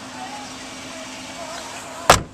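Steady outdoor background noise in a pause between words: an even hiss with no distinct event.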